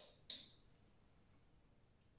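Near silence broken by two short clicks about a third of a second apart near the start, the second louder: chocolate pieces and fingers touching the small plates they sit on.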